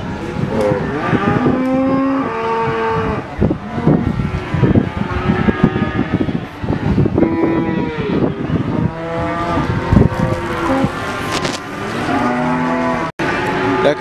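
Several cattle mooing, with many long lows overlapping at different pitches. Scattered knocks and clatter come through in the middle.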